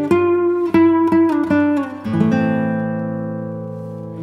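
Acoustic guitar music: a run of single plucked notes, then a chord struck about halfway through and left to ring and fade.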